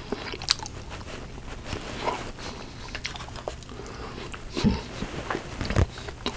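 Close-miked chewing and wet mouth sounds of a man eating a meatloaf dinner with a spoon: scattered lip smacks and small clicks, with two louder, deeper mouth sounds near the end.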